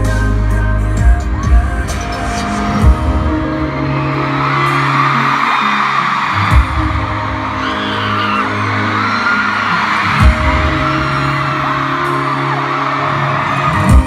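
Live concert music played loud over an arena sound system during an instrumental stretch, with a few heavy bass thumps. From about four seconds in, the crowd's screaming and cheering rises over it. The sound is picked up by a phone among the audience.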